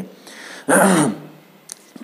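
A man clearing his throat once, a short rasp with a falling voiced tail about two-thirds of a second in.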